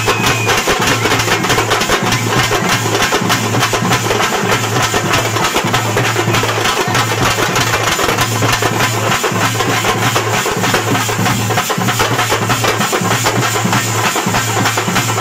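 Loud, drum-driven dance music: fast, dense percussion over a low, pulsing bass throughout.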